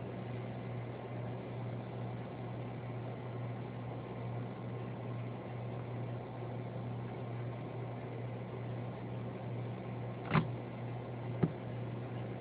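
Steady low hum of a small electric box fan running, with two sharp clicks near the end, about a second apart.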